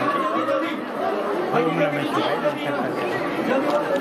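A man talking in Hindi, with other voices chattering in the background.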